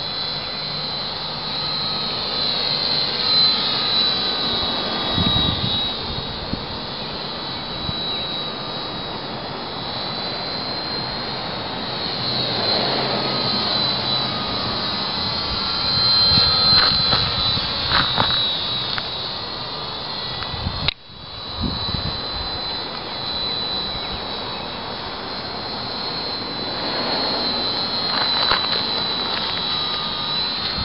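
Motor and propeller of a radio-controlled J3 Cub model plane running steadily as it circles overhead: a high whine that slowly rises and falls in pitch as the plane comes and goes. The sound briefly cuts out about two-thirds of the way in.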